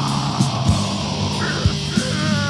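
Death metal from a 1993 cassette demo recording: distorted guitars, bass and drums playing, with a harsh vocal over them.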